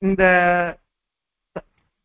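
A man's voice drawing out a single word on a steady pitch for under a second, then pausing. A brief short vocal sound about one and a half seconds in.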